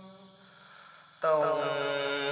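Slow sung vocal music: a long held sung note fades away, then after a brief near-quiet gap a new sustained note begins just over a second in.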